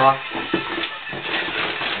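Crinkly rustling and handling of a cardboard sneaker box and its paper wrapping as a pair of shoes is taken out.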